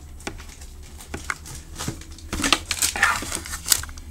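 Paper rustling and crinkling as a hardcover book is handled and shifted in the hand: a string of small clicks and crackles, busier and louder in the second half.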